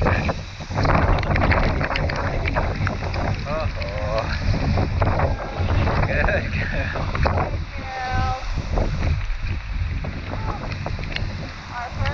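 Hail shower beating on rain ponchos in strong gusting wind: a constant low wind rumble on the microphone with many sharp ticks of hailstones striking.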